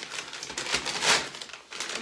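Brown kraft packing paper crinkling and rustling as it is handled and pulled apart to unwrap a parcel, loudest about a second in.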